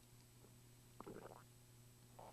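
Near silence with one faint, short throat sound about a second in: a swallow after a sip from a cup.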